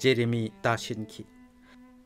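A man narrating in Manipuri for about the first second, then a faint steady hum of a few held tones.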